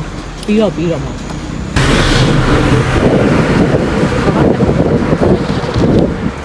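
Wind buffeting the microphone of a camera on a moving bike, a loud rushing rumble that cuts in suddenly about two seconds in.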